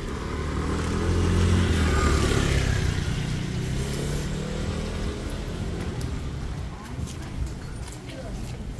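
A motor scooter passing close by, its small engine getting louder over the first two seconds or so and then fading away as it goes past.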